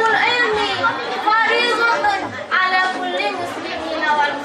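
Only speech: a young, fairly high-pitched voice talking, with chatter from a seated crowd of students around it.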